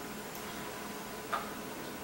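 A single light click a little past halfway, a small cup being set down on a table, over a steady faint room hum.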